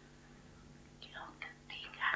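Pause in speech with a faint steady low hum, then from about a second in, soft breathy whisper-like sounds of a speaker drawing breath before talking.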